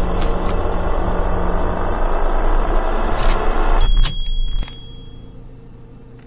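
Loud, dense rumbling noise punctuated by sharp hits, two close together near the start and two more around three and four seconds in, cutting off suddenly about three quarters of the way through and leaving a faint low sustained drone.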